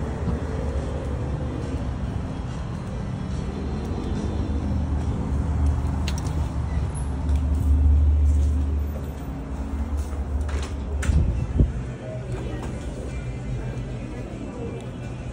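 Low outdoor rumble on a handheld phone microphone, swelling to its loudest near the middle. A door thumps a little after eleven seconds in, then comes quieter indoor restaurant room sound with faint background music.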